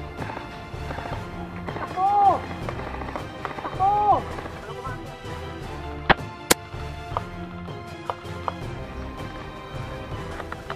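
Two sharp cracks about half a second apart, about six seconds in, from a JG Bar 10 spring-powered bolt-action airsoft sniper rifle being fired, followed by a few lighter clicks. Background music and shouted calls run underneath.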